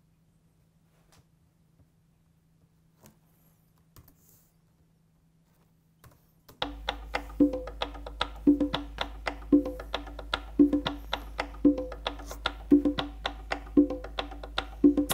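A sampled conga loop playing back: after a few seconds of near silence with faint clicks, a quick, steady pattern of hand-drum hits starts about six and a half seconds in, with a deeper tone about once a second.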